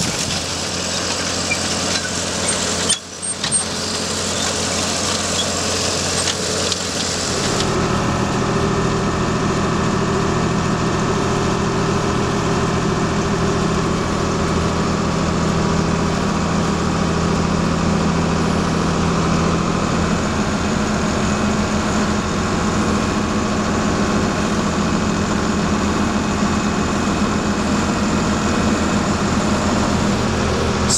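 Tractor and corn planter running in the field, heard outdoors beside the planter's row units as a wide hissing rush. About eight seconds in this gives way to a steady drone with several held low tones: the John Deere 4640 tractor's engine heard inside its cab while pulling the planter.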